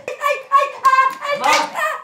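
A high voice singing or chanting a short, rhythmic tune of repeated syllables, with sharp hand claps or slaps in between.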